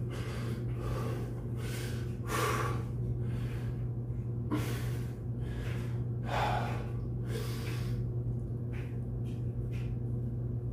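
A man breathing hard after heavy exercise, out of breath and recovering: short, heavy breaths in and out, roughly once a second and unevenly spaced.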